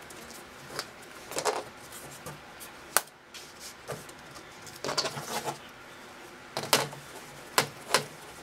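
Small picture frame being closed up: several sharp clicks as its backing is pressed in and the clips on the back are pushed down. Between the clicks, the frame and board scrape and rub against the tabletop.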